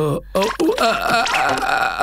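A cartoon character's long, strained vocal noise, wordless, lasting about one and a half seconds, as a character struggles with an awkward yoga pose.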